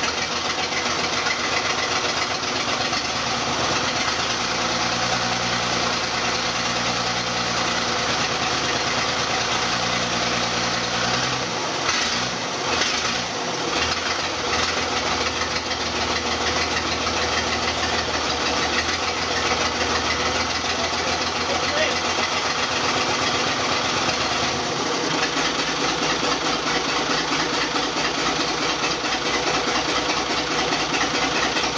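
Naturally aspirated Cummins 5.9 inline-six diesel running at idle on its first start after a rebuild, a steady diesel clatter; its note shifts briefly about twelve seconds in and again near twenty-five seconds.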